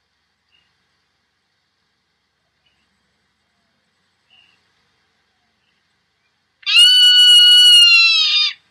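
Near silence, then about six and a half seconds in, a recorded zone-tailed hawk call starts: one long, loud, drawn-out scream that drops slightly in pitch just before it ends.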